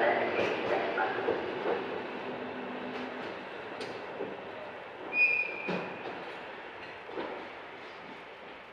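Field recording of a JNR Class C62 steam locomotive train, played from vinyl: a steady running noise that slowly fades, with voices in the first couple of seconds. About five seconds in there is a sharp knock and a short high tone, then a few fainter clicks.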